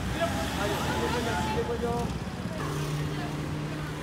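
Roadside street sound: people's voices in the background over a low traffic rumble, then a car's engine running close by as it passes, a steady low hum from a little past halfway.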